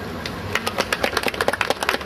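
A small group of people clapping by hand: a short, scattered round of applause starting about half a second in.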